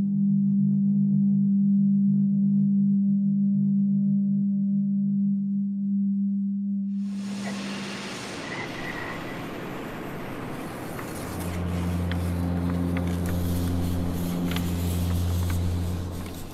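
Ambient soundtrack of a short performance film: a steady low drone, then about seven seconds in a rushing noise swells up, joined a few seconds later by deeper sustained tones and a few faint clicks.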